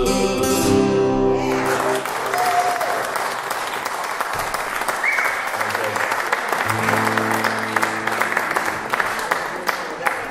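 An acoustic guitar's closing chord rings out, then audience applause breaks in about a second and a half in. A few guitar notes are picked under the applause in the second half.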